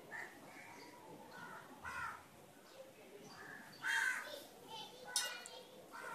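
A bird calling in a few short, loud calls, about two, four and five seconds in; the one near four seconds is the loudest.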